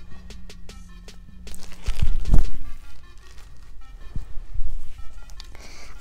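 Handling noise of packaged camping gear being turned over in the hands close to a clip-on microphone: scattered clicks and rustles, with a loud low thump about two seconds in.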